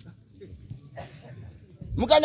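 A short pause between a man's loud speech, filled only by faint distant voices.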